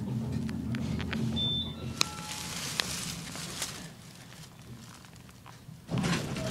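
A Schindler hydraulic elevator car descending, with a low steady hum for about two seconds. Then come a short high beep, a clunk and a brief falling two-note chime, followed by a rush of noise with a few clicks that dies away.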